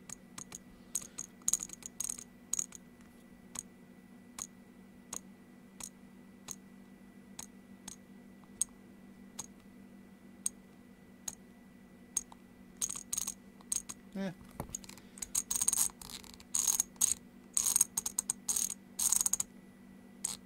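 CNC handwheel incremental rotary encoder clicking through its detents as it is turned by hand: single clicks about once a second at first, then quick runs of clicks in the second half.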